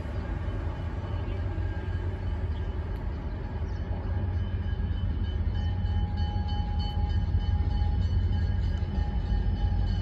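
Diesel locomotive's low engine rumble, growing slowly louder as it approaches.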